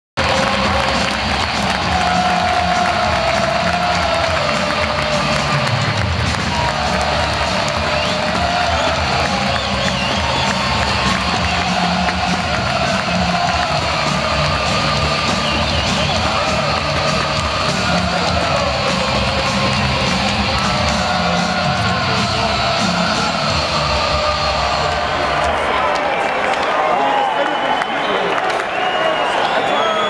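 Hockey arena crowd cheering over loud goal music played through the arena's PA system; the music stops near the end while the crowd noise carries on.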